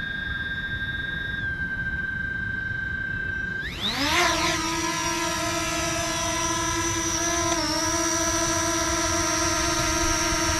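Fimi X8 Mini drone's motors and propellers: a steady high whine while it sits on the ground. About four seconds in, a quick rising whine as the motors spool up for take-off, settling into a steady hover whine that dips in pitch briefly near the end.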